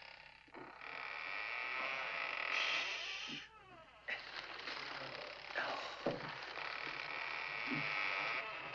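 Grinding, squealing creak of a brass unicorn's threaded horn being turned in a wooden wall panel as it is unscrewed. It runs in two long stretches with a short break a little after three seconds.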